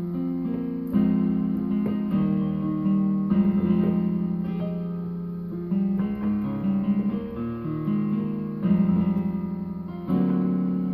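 Yamaha Portable Grand digital keyboard played with both hands: a slow run of sustained chords in A flat, a new chord struck about every second, walking down.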